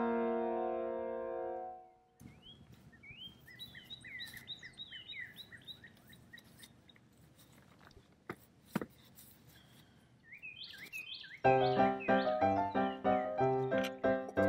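Faint wild birds chirping, a run of short repeated calls with quick pitch slides, in a gap between piano music: a piano chord fades out at the start and the piano music comes back near the end. A single sharp click about nine seconds in.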